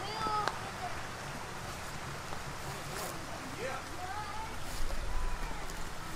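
Faint, indistinct voices in short fragments over a steady outdoor background hiss.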